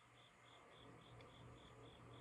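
Near silence: a cricket chirping faintly, about three chirps a second, over a steady low hum. A faint breathy sound rises from about half a second in as cigar smoke is drawn and blown out.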